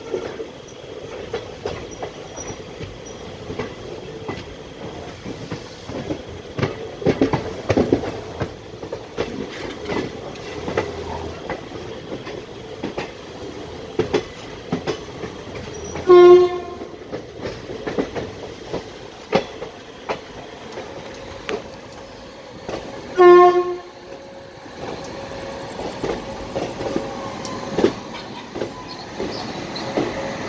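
Passenger train running, heard from an open coach door: a steady rumble with wheels clicking irregularly over rail joints. A locomotive horn sounds twice in short blasts about seven seconds apart, and these are the loudest sounds.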